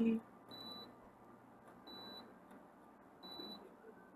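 A faint, short, high-pitched electronic beep, repeating three times about a second and a half apart over quiet room tone.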